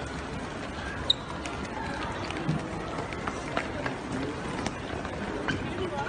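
Crowd hubbub of a moving crowd: low chatter and footsteps, with scattered short sharp clicks and one louder click about a second in.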